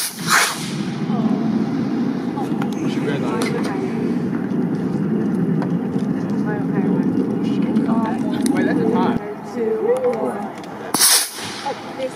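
A model rocket motor ignites and launches with a short, sharp hissing whoosh at the start. A steady low rumble with faint voices follows and stops abruptly near the end, and a brief sharp burst of noise comes just before the end.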